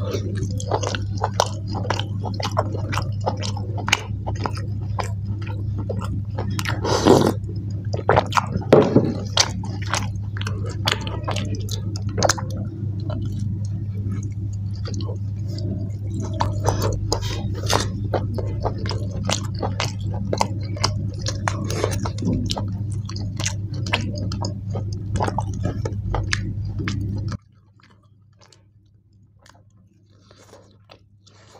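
Close-up chewing of boiled mutton eaten by hand: a steady run of wet smacks and clicks of the mouth, with two louder pitched sounds about a quarter of the way in. A steady low hum lies under it and cuts off suddenly near the end.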